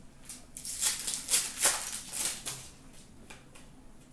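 Hockey trading cards being flipped through by hand: a quick run of short swishes and flicks of card stock sliding over card over the first two and a half seconds or so, then softer.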